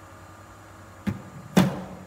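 Two impacts of a cricket ball delivered by a bowling machine: a sharp knock about a second in as the machine fires the ball, then a louder thud half a second later as the ball pitches on the artificial turf.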